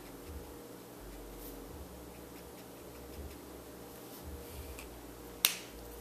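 Quiet room tone with a low hum, then a single sharp click about five and a half seconds in: the cap of a Copic marker snapped shut.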